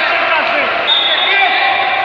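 Indoor handball match sounds: the ball bouncing on the hall floor amid players' and spectators' voices calling out, in a large echoing sports hall.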